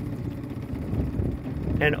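Outboard motor running at low speed, a steady low rumble with a faint constant hum. A voice begins near the end.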